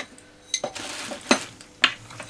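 Metal tools clinking and clattering while being rummaged through and picked up: about five sharp separate knocks.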